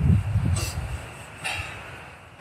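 Wind rumbling on the microphone, strongest in the first half-second and then dying away, with two short sniffs about half a second and a second and a half in.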